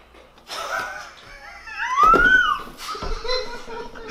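A high, wavering wail-like vocal cry about two seconds in, sliding up and then down in pitch, with a few faint handling clicks around it.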